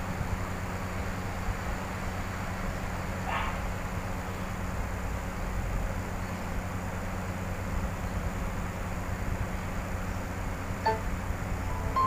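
Steady low hum with a hiss, and no music or speech over it. There is a faint short sound about three seconds in and a brief tone about a second before the end.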